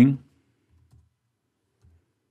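The tail of a spoken word, then near silence with a few faint, soft taps from a computer keyboard as a line of code is finished.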